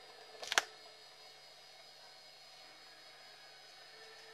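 A brief sharp noise about half a second in, then quiet room tone with the steady hiss and faint whine of a home camcorder.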